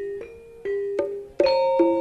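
Instrumental accompaniment from a campursari band: a slow line of single struck, ringing pitched notes, each sustaining and fading before the next, with the playing growing fuller about one and a half seconds in.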